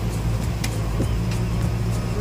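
Excavator's diesel engine running steadily while its bucket digs into soil, with a couple of faint knocks about a second in.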